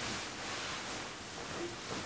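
Bedding rustling as a duvet is flung up and pulled over a person lying down in bed, a soft swishing of fabric.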